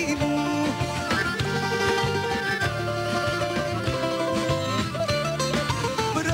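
A live band playing an instrumental passage of a Greek popular song, a plucked string instrument carrying the melody over bass and rhythm. A woman's singing voice comes back in right at the end.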